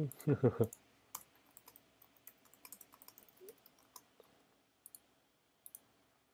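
A short laugh, then scattered light clicks from a computer keyboard and mouse, with two pairs of sharper clicks near the end.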